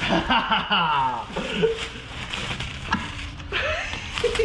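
Men laughing and chuckling, with voice sounds but no clear words, loudest in the first second and a half and again near the end.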